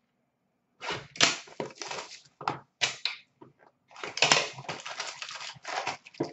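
A cardboard trading-card box being opened and a foil-wrapped card pack taken out and handled. It makes irregular crinkling and crackling with sharp clicks, starting about a second in and growing denser toward the end.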